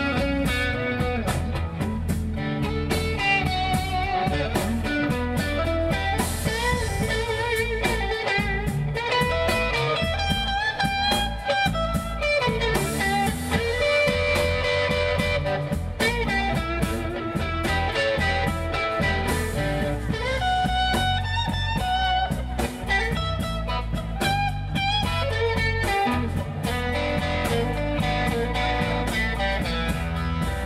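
Live electric blues band in an instrumental break: a Stratocaster-style electric guitar plays lead lines with bent, wavering notes over electric bass and drums.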